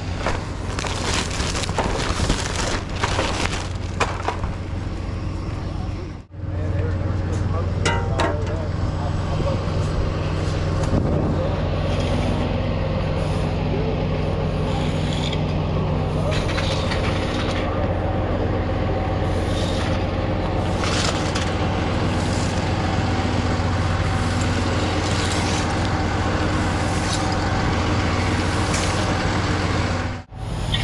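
Rustling and clattering of crash debris being handled for about six seconds. After an abrupt break, a rollback tow truck's diesel engine idles steadily, with short scraping broom strokes on concrete every second or two.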